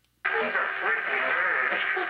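A voice over a hissy, narrow telephone line, starting about a quarter second in after a moment of silence.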